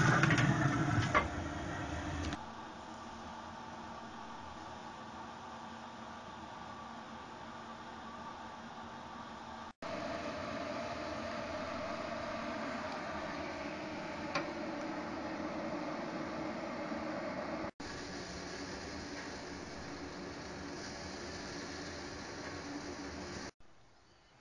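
Traeger Lil' Tex pellet grill running on its smoke setting: a steady fan hum, with a few abrupt cuts where the recording jumps.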